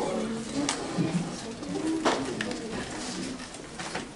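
Low, indistinct chatter and vocal noises from an audience of children in a hall, with a few scattered knocks and rustles.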